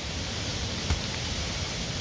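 Steady wind noise on the microphone, with a single sharp click about a second in.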